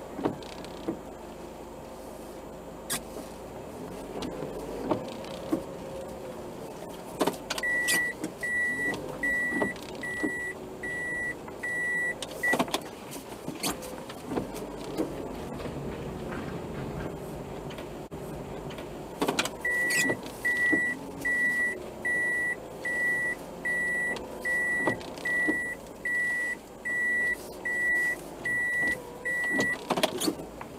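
Car idling while being parked, with an in-cabin warning beeper giving evenly spaced high beeps, about one and a half a second, in two runs: the first for about five seconds starting about a quarter of the way in, the second for the last third. A few sharp clicks fall between them.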